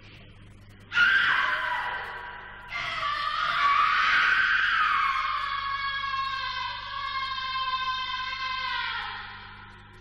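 A girl screaming: a sudden sharp scream about a second in, then one long scream held for about six seconds that slowly falls in pitch and fades near the end.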